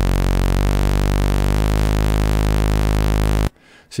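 Eurorack modular synthesizer sounding one sustained, buzzy low note after another, with steady hiss underneath; the pitch steps to a new note twice in the first two seconds, then holds. Each note is being recorded in turn to build a multisampled instrument. The tone cuts off abruptly about three and a half seconds in.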